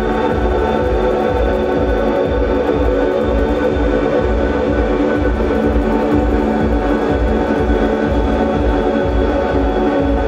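Live ambient electronic music: effects-laden electric guitars hold a dense, sustained drone over a steady low pulse of about two beats a second.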